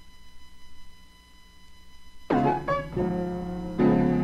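A quiet gap with faint hiss and a thin steady hum, then about two seconds in a solo blues piano starts with loud chords, striking again near the end.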